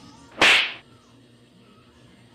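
A whip-crack swoosh sound effect: one sudden, loud rush that starts about half a second in and dies away within half a second.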